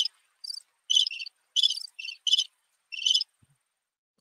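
Crickets chirping, played as the stock 'crickets' sound effect for a silence with no answer. Short high chirps come two or three a second and stop a little past three seconds in.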